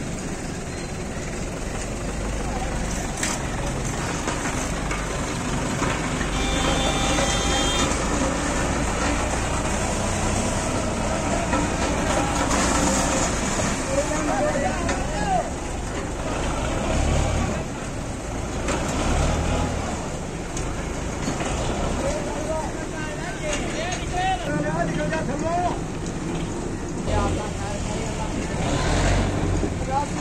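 Tractor diesel engine running steadily under load as it pulls a stalled road roller on a chain to tow-start it, with men shouting over it.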